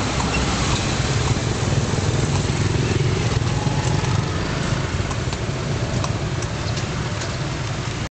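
Steady street-traffic rumble with motorcycle engines, heard from a moving horse-drawn andong carriage, with a few faint clicks in the second half.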